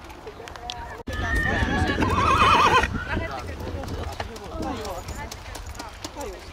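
A horse whinnying once about a second in: a call of nearly two seconds that starts high, drops and wavers, with people talking around it.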